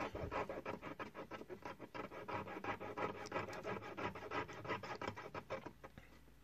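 Jeweler's saw with a fine 2/0 blade sawing through a coil of 16-gauge varnished copper wire to cut jump rings: quick, even back-and-forth rasping strokes that stop just before the end.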